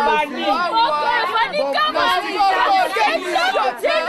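Excited chatter of several women talking and calling out over one another, their voices high and overlapping without pause.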